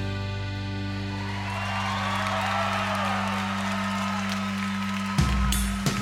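Background rock music: a band's chord held and ringing with guitar, then drums come in hard about five seconds in.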